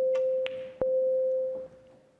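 Shot-clock warning beeps at the Snooker Shoot-Out: two long electronic beeps in a row, each about a second long at one steady mid pitch, sounding as the last seconds of the shot time run down. A single sharp click comes about half a second in.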